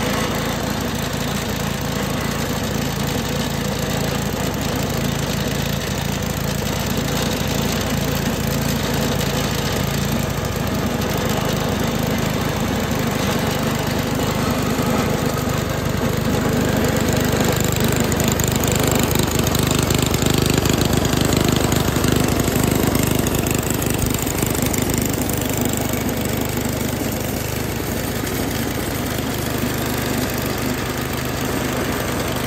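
Toro 421 snow blower's small engine running steadily, rising a little in loudness for several seconds past the middle before settling back.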